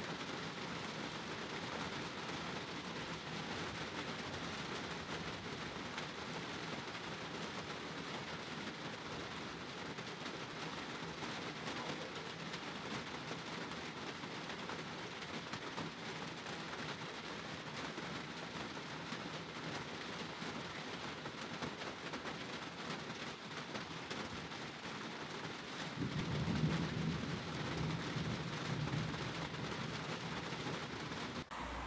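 Steady rain of a thunderstorm, with a low rumble of thunder rolling in about four seconds before the end.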